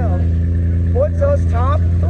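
A car engine running with a steady, even low drone, heard from inside the cabin, with a man talking over it.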